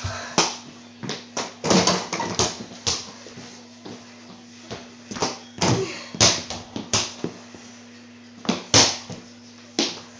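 Irregular thumps and knocks of feet running, jumping and landing on a wooden floor close to the camera, over a steady low hum.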